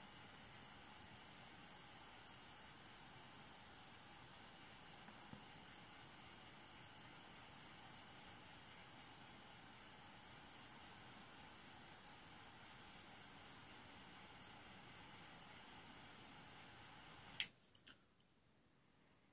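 Faint, steady hiss, then a sharp click near the end with a couple of lighter clicks after it, and the hiss stops: a handheld cigar lighter being snapped shut.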